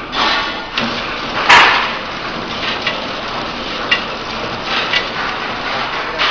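Horizontal flow-wrapping packing machine running, with uneven knocks and clatter. There is a loud rustling burst about a second and a half in, and sharp clicks near four and five seconds.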